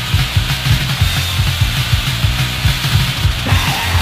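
Hardcore punk band recording at the opening of a song: a fast drum-kit beat with bass, and a shouted vocal coming in near the end.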